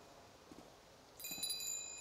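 A small brass bell hanging from a branch ringing: quiet for about a second, then a few quick strikes and a high, lingering ring.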